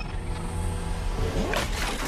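Cinematic logo-intro sound effects: a deep steady rumble with a sweep rising in pitch about one and a half seconds in, breaking into a bright whooshing burst as the title shatters.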